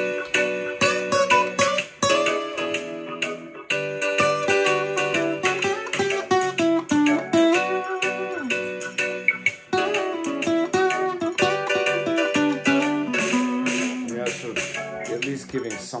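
Steel-string acoustic guitar playing a melodic lead line. Single notes are picked in quick succession in phrases with short breaks between them, shaped to build a melody rather than wander around the scale.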